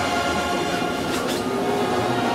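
Brass band of a funeral procession march holding long sustained chords, over a crowd's noise.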